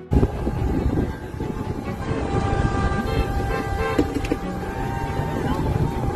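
Trucks and cars of a convoy driving past, with horns held in steady tones over a dense wash of traffic noise and crowd voices.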